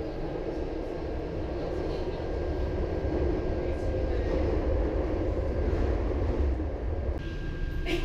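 Inside a Taipei Metro train car: the steady low rumble of the train running, growing louder through the middle and dropping off sharply near the end.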